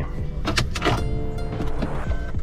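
Honda HR-V's four-cylinder i-VTEC engine being started with the push button: a brief crank about half a second in, then the engine catching and idling.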